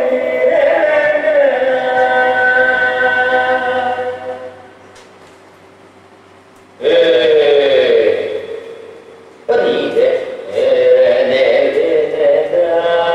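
Chanted singing from improvisations on a Khorku death song: a long held vocal phrase fades out about four seconds in, and after a short pause two more phrases begin abruptly, the first sliding down in pitch.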